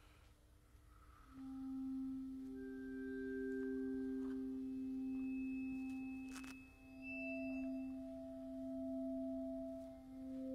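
Bowed keyboard-percussion bars holding pure, ringing tones on C, E and G. The tones enter one after another from about a second in and overlap into a sustained chord, with a short click at about six and a half seconds. The bars are bowed without being struck, so each note swells in slowly instead of speaking at once.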